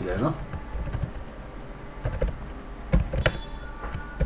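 Typing on a computer keyboard: scattered key clicks, with two louder keystrokes about three seconds in.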